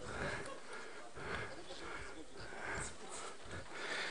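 Faint voices of people talking away from the microphone in a large hall.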